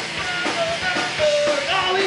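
Live punk rock band playing: electric guitars and a drum kit, loud and continuous, with a voice singing a melody line over them.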